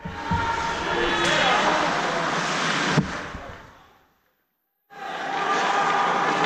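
Ice hockey rink game noise: voices of players and spectators over skating and stick noise, with a sharp knock about three seconds in. The sound fades out about four seconds in and cuts back in shortly before the end.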